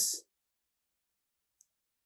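The tail of a man's spoken word, then near silence with one faint, short click about a second and a half in.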